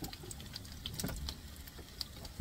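Battered sweet potato slices shallow-frying in oil in a nonstick pan, the oil crackling with scattered small pops, one a little louder about a second in.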